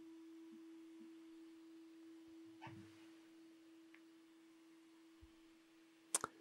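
Near silence: quiet room tone with a faint steady hum held at one pitch.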